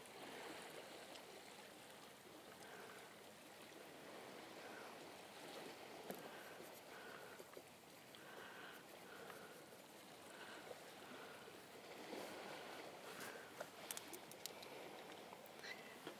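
Near silence: faint open-air ambience, a soft steady wash like distant water, with a faint short note repeating about twice a second through the middle.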